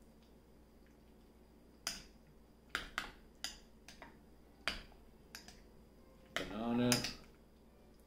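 Metal spoon clinking against a porridge bowl as the porridge is stirred: about half a dozen separate sharp clinks spread over a few seconds.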